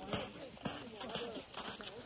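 Footsteps crunching on packed snow at a walking pace, about two steps a second, with people's voices talking under them.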